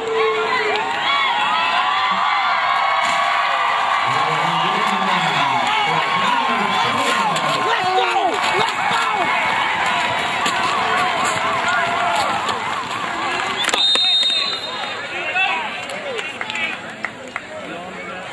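Football crowd and team cheering and shouting, many voices at once, loud and sustained before dying down about three quarters of the way through.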